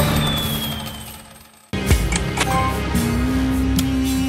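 Book of Ra Deluxe 10 slot game sound effects: a win jingle fades away over the first second and a half, with a falling whistle, then a loud reel-spin effect and game music start suddenly as the next spin begins, with a few sharp clicks.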